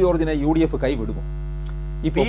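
A man speaking Malayalam for about the first second. Under it a steady electrical mains hum runs on, and it is heard alone once he stops.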